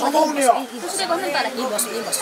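Several people praying aloud at the same time, their voices overlapping into a steady babble of speech.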